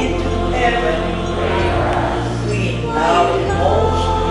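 A congregation singing a hymn together, over steady sustained instrumental accompaniment.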